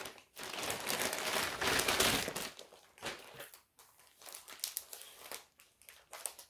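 A mailing envelope being opened by hand: about two seconds of loud crinkling and rustling packaging, followed by softer, scattered rustles and clicks as the packaging is handled.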